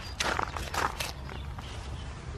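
Hand trowel digging a planting hole in cloddy garden soil: three or four short gritty scrapes of steel into earth in the first second or so.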